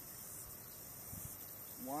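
Steady high-pitched chirring of insects in the background, with a few faint low bumps. A man's voice says 'one' near the end.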